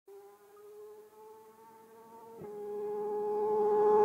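A motorcycle engine approaching at speed from far away: a steady high whine, faint at first, that steps slightly up in pitch about halfway through and then grows steadily louder.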